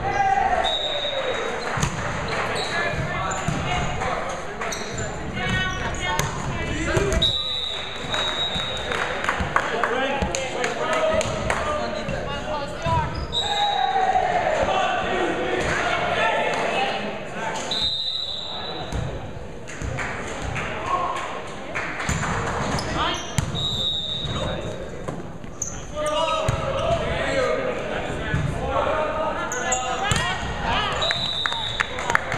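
Echoing gymnasium sound: voices of players and onlookers talking and calling, with balls bouncing and slapping on the hardwood floor throughout. A short high-pitched tone sounds several times.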